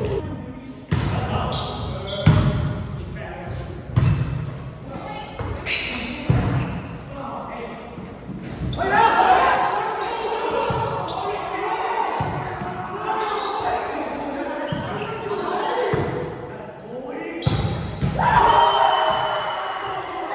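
Indoor volleyball being played in an echoing gym: a series of sharp slaps of hands and forearms on the ball every second or two. Players shout and call throughout, loudest about halfway through and again near the end.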